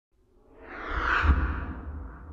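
Whoosh sound effect that swells up from silence over about a second, with a deep rumble underneath, peaks a little past a second in and then fades.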